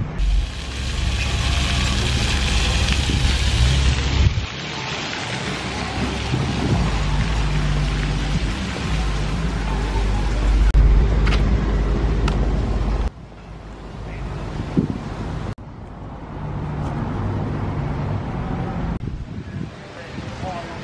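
Outdoor street ambience with wind rumbling on the microphone, in several short clips that change abruptly a few times.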